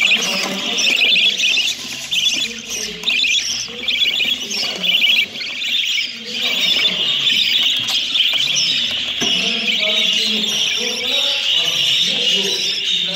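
A flock of young budgerigars chattering and squawking: a dense, unbroken stream of rapid, high, scratchy calls that thickens about halfway through.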